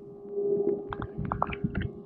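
Muffled underwater sound from a camera below the surface: a steady low hum with short pops and blips scattered through it.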